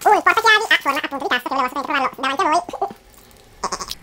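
A man's wordless, high-pitched vocal noises with strongly sliding pitch, the strained sounds of someone struggling to open a small box. They are followed near the end by a brief high hiss.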